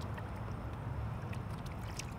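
Steady low hum of a bass boat's electric trolling motor, with faint water sounds as a largemouth bass is released over the side.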